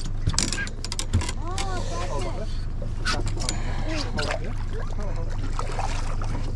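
Short clicks and knocks of a landing net and fishing gear being handled aboard a small boat, over a steady low hum.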